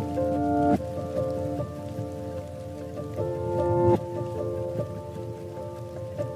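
Soft, slow music of held chords, which change about a second in and again about four seconds in, laid over the steady patter of rain.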